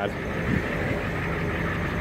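A vehicle engine idling steadily, a low even hum.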